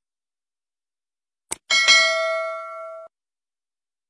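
Subscribe-button animation sound effect: a single mouse click about one and a half seconds in, then a bright bell ding that rings on for about a second and cuts off abruptly.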